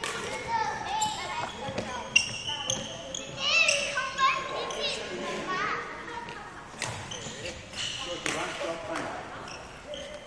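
Indistinct voices echoing in a large sports hall, with footsteps on the wooden court floor and a few sharp knocks.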